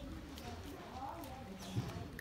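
A cat crunching dry kibble, heard as a few sharp clicks, over faint indistinct voices. A low thump near the end is the loudest sound.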